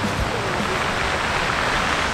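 Sea surf breaking and washing on the beach at the foot of the cliffs, heard from above as a steady rushing noise that swells towards the end.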